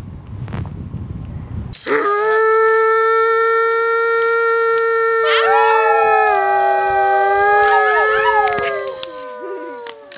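Wolf-like howling by several voices. One long, steady howl starts about two seconds in, a second howl joins with a rising slide about five seconds in, and the howls slide downward and fade near the end.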